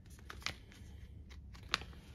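Foil sheet-mask sachet being handled, giving faint crinkles and two short sharp ticks, one about half a second in and one near the end.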